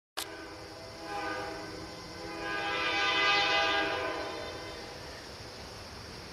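Freight locomotive air horn sounding from an unseen approaching train, several tones at once. It comes in about a second in, swells to its loudest around the middle and fades out near the end.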